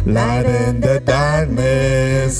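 Live worship song: a woman and a man singing into microphones over bass and guitar, the voices holding each sung note for about half a second.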